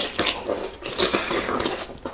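Wet slurping and sucking as two people bite into soft, syrupy canned mango halves, louder and hissier about a second in.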